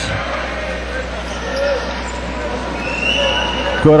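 Steady basketball-arena crowd murmur during a free throw, with a brief high steady tone about three seconds in.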